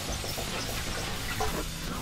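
A microfiber wash glove rubbing over the soapy foam on a small motorcycle's bodywork, a steady soft hiss.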